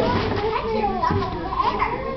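Several children talking and calling out over one another in a lively group chatter.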